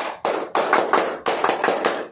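Rapid hand clapping, many quick claps a second in a steady run that stops near the end.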